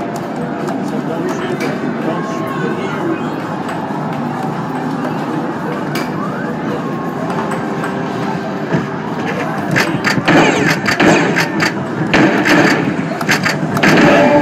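Busy arcade din: a steady wash of game-machine noise and crowd chatter. From about ten seconds in, a run of sharp clacks and knocks rises over it.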